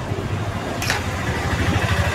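A steady low engine-like rumble, with one sharp metallic knock of a serving spoon against a large metal biryani pot a little under a second in.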